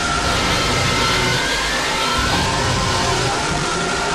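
Harsh electronic noise music: a loud, steady wall of dense noise with a tone that glides down and slowly back up.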